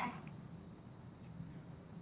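Crickets chirping: a faint, steady, high pulsing trill.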